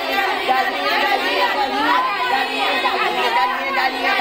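A crowd of young children's voices talking and calling out over one another at once, a continuous, loud clamour.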